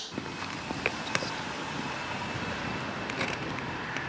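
Steady noise of a car on the road, with a couple of faint clicks about a second in.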